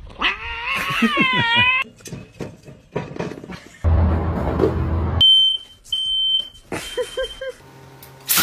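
A cat gives a long, wavering yowl in the first couple of seconds. About four seconds in comes a second of loud rough noise, followed by a high steady beep that sounds twice, each less than a second long.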